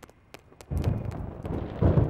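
Thunder: a deep rumble that breaks in suddenly under a second in and swells to its loudest near the end, as lightning flashes.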